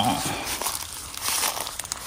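Footsteps rustling and crunching through grass and dry fallen leaves in undergrowth, an irregular crackle.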